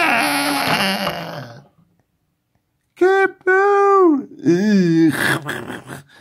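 A person's voice making wordless sound effects for a toy fight: a long strained cry that fades out about a second and a half in, then, after a short pause, a run of short cries and grunts rising and falling in pitch.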